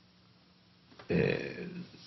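Near silence, then a single short burp from a man about a second in, lasting under a second.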